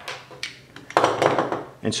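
A pistol and its small brass laser training cartridge being handled on a wooden table: a couple of light clicks, then a short scraping rustle about a second in.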